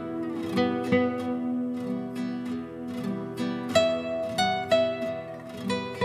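Two nylon-string classical guitars playing a slow duet, plucked single-note melody ringing over held chords, a new note struck about every half second.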